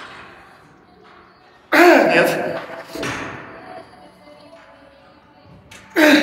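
A man's strained, wordless grunts and forced exhalations as he pushes out the last reps of lying EZ-bar triceps extensions. The loudest comes about two seconds in with a falling pitch, and a shorter one follows a second later. Quiet background music plays underneath.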